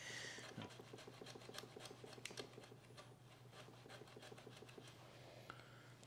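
Faint, quick scraping strokes of a pencil being shaped flat by hand, several a second at first and thinning out later, over a low steady room hum.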